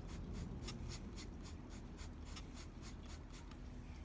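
Plastic trigger spray bottle pumped in quick repeated squirts, about five or six a second, misting water onto perlite rooting medium for succulent cuttings; the squirts thin out toward the end.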